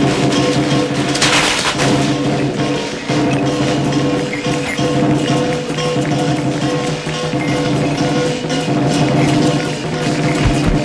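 Lion-dance music: busy drum and percussion strikes over sustained pitched notes, with a loud crash about a second and a half in.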